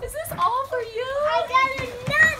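A toddler's high-pitched voice, babbling and vocalising without clear words.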